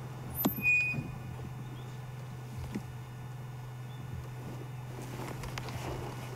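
Engine of an open safari game-drive vehicle running steadily at low revs, a constant low hum. A few sharp clicks and knocks come in the first second.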